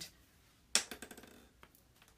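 A single sharp click of a small hard object on the craft table about three quarters of a second in, followed by a few faint ticks as craft tools and paper pieces are handled.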